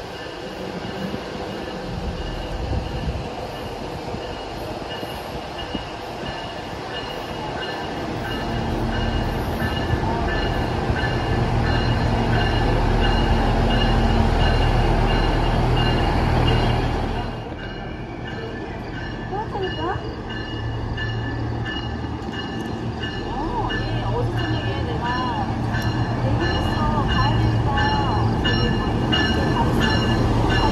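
UP Express diesel multiple-unit train pulling into a station platform, its rumble building over the first half. After a sudden dip it goes on as a steady low engine hum with the train alongside.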